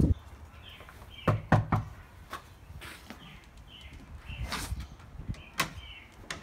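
Knocking on a wooden front door: three quick raps about a second in, then a few lighter knocks and clicks. Birds chirp faintly throughout.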